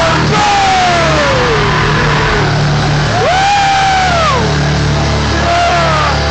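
Live hardcore punk band playing loud through a PA, a low chord held under long sliding pitched notes: one falls slowly early on, and another rises, holds and falls again from about halfway through.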